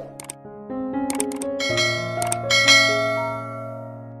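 Soft piano music with a subscribe-button animation's sound effects over it: a quick run of mouse clicks about a second in and again about two seconds in, then a bright bell ding that rings out and is the loudest sound.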